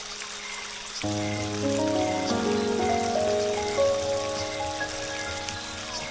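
Steady running water of a small cascade, with soft, slow ambient music: sustained notes come in one after another about a second in, building a held chord over the water.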